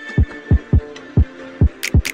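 Background music beat: deep booming kick drums that fall in pitch, hitting in a quick repeating rhythm under a held synth tone, with a few sharp high hits near the end.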